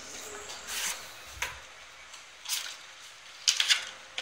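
Handling of a clear plastic phone case as it is slid out of its cardboard and plastic packaging: several short rustles and scrapes with a small click, and a quick run of them near the end.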